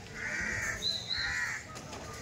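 A bird calling twice outdoors, each call about half a second long, with a short high whistle between the two calls.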